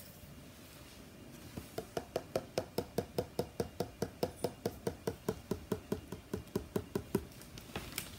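A fingertip tapping rapidly on the base of an upturned plastic cup full of acrylic paint resting on a canvas in a flip-cup pour, about five light taps a second. The tapping starts a second and a half in and stops just before the end.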